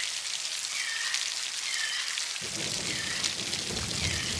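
Steady heavy rain falling on rainforest foliage and a wooden deck. A little past halfway a deeper rumble of rain joins in, and faint short chirps recur over it.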